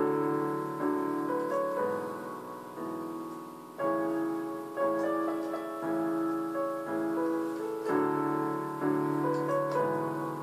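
Piano voice of an electronic keyboard played with both hands: a chord struck about once a second, each ringing and fading before the next.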